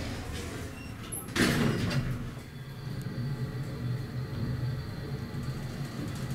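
Elevator's sliding door closing, meeting the frame with a sudden loud thump about a second and a half in. A steady low hum from the elevator follows.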